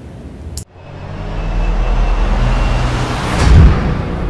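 Logo outro sound effect: a whoosh that swells over a deep rumble and builds to a heavy low boom about three and a half seconds in.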